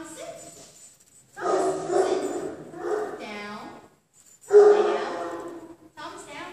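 A young German Shepherd vocalizing in long, drawn-out pitched calls: three in a row after a short one at the start, the middle one dipping low in pitch and rising again, the last one the loudest.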